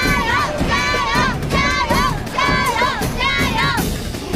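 A group of women shouting a cheer in unison five times in a steady rhythm, about one shout a second: the Chinese "jiayou!" ("go for it!") chant urging on a contestant.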